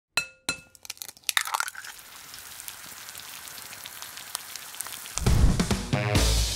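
Intro sound effects: two ringing clinks, then a quick run of cracks that thins to a crackling hiss. A music track with a heavy bass beat starts about five seconds in.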